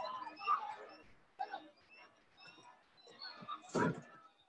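Film soundtrack heard through a video call: a scuffle with short, scattered vocal sounds and no clear words, then a single loud thump near the end as a figure falls to the floor.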